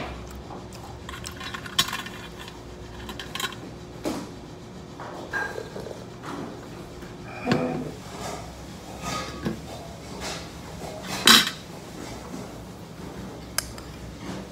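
Metal chopsticks and spoon clinking and scraping against a large stainless steel noodle bowl in scattered knocks, the loudest about three quarters of the way through.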